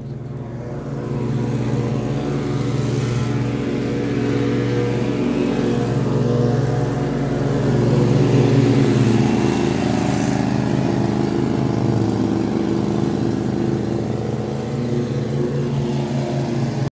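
A motor engine running steadily and loudly. It grows louder over the first two seconds, then holds an even hum with slight rises and falls.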